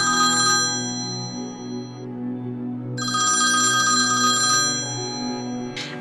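Telephone ringing sound effect over soft background music: one ring fading out just after the start and a second ring starting about three seconds in.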